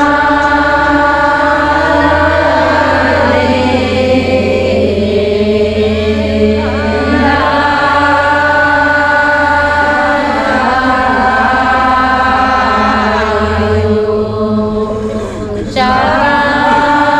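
A crowd chanting a Sarna prayer together in unison, in long held phrases; a short break near the end, then the chant starts again.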